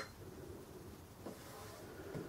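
The tail of a short, high key-press beep from a Sam4S NR-510R cash register at the very start, then quiet room tone with one soft tap about a second and a half in.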